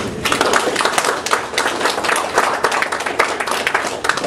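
Audience applauding: dense clapping from many hands, breaking out suddenly as the talk ends.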